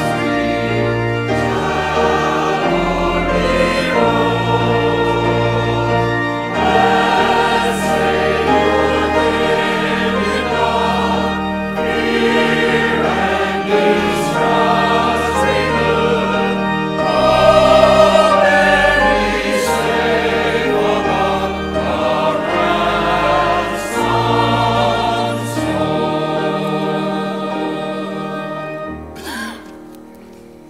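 Church choir singing with organ accompaniment, long held bass notes underneath the voices; the music tapers off near the end.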